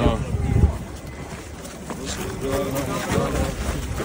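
Indistinct voices of people talking close by, picked up by a handheld microphone on the move, with low wind rumble on the microphone in the first second.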